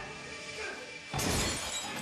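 Action-film score with a sudden crash of something breaking about a second in, its high ringing tail trailing off.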